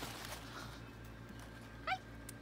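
A kitten mewing once near the end: a short, high-pitched cry. A brief rustle comes at the start.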